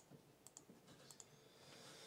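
Near silence with a few faint clicks, some in quick pairs: laptop keys or mouse buttons being pressed to move through presentation slides.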